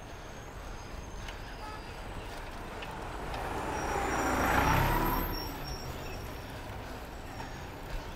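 Street traffic heard from a moving bicycle, with a steady low rumble of wind and road under it. A car swells up, passes close about four to five seconds in, and fades away.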